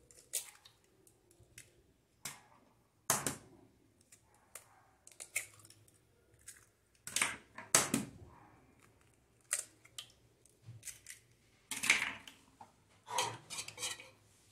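Raw eggs being cracked against the edge of a glass bowl and broken open, three in turn: a series of sharp cracks and taps with short quiet gaps between them.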